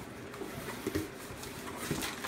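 Cardboard box flaps being folded open by hand: faint rustling with a couple of soft knocks, one about a second in and one near the end.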